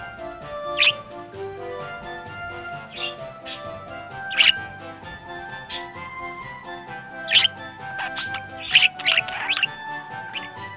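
Budgerigar chirping in short, sharp calls, about ten of them, the loudest bunched together near the end, over steady background music.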